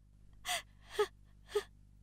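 A woman sobbing: three short, gasping sobs about half a second apart, each with a brief falling catch of the voice.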